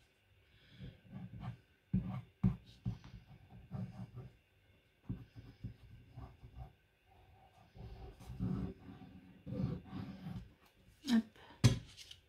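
Light scraping and rustling of a white-glue squeeze bottle's tip being worked over the back of a sheet of paper, in short irregular strokes with a few light taps, and a sharper knock near the end as the bottle is set down on the table.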